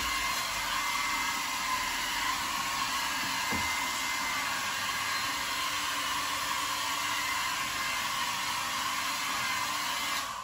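Handheld hair dryer running steadily, a constant rush of blown air with a faint high whine, used to push poured paint around on a canvas.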